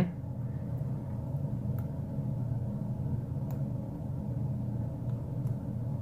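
A few faint, scattered clicks of a hook pick working the pin stack of a brass padlock held under tension in a false set, over a steady low hum.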